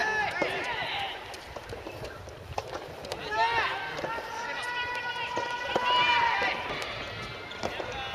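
Men's voices shouting short calls on a soft tennis court, with one long drawn-out call held at a steady pitch for about two seconds, starting about four seconds in.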